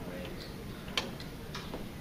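Room tone in a quiet conference room, with one sharp click about a second in and a few fainter ticks.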